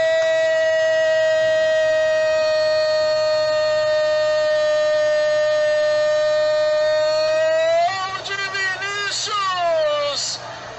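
Football TV commentator's drawn-out goal cry: one long held note for about eight seconds, then the voice breaks into shorter wavering, falling calls near the end.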